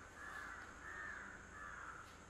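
Faint repeated bird calls, about four short calls in a row, over a low background hum.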